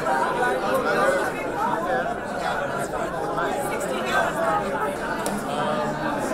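Crowd chatter: many people talking at once, their conversations overlapping, in a large room.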